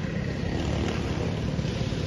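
Steady low rumble of outdoor background noise with a fainter hiss above it, and no single sound standing out.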